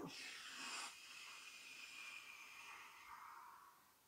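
A long, soft exhale blown out through pursed lips, as when blowing out a candle. It is a breathy rush of air, strongest in the first second, then trailing off and fading away near the end.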